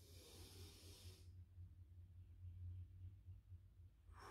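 A breath drawn in through the nose for about a second, then held: near silence with only a low steady hum.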